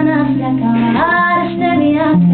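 A woman singing live to her own strummed acoustic guitar. About a second in, her voice slides up into a held note.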